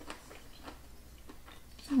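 A person quietly chewing a mouthful of food, with a few faint clicks; an appreciative "mm" begins right at the end.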